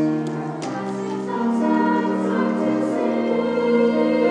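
Girls' treble choir singing in held chords, the notes shifting every half second to a second, with a few sibilant consonants heard in the first second.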